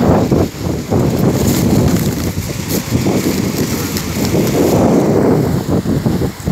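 Wind buffeting a phone's microphone: a loud, uneven low rumble that surges and dips.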